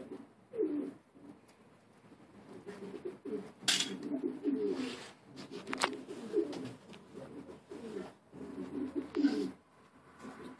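Domestic pigeons cooing over and over, several birds overlapping in low, wavering calls, with a few short sharp noises among them.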